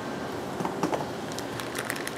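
Steady hum of equipment-room fans and air handling, with a few faint clicks of small connector parts being handled.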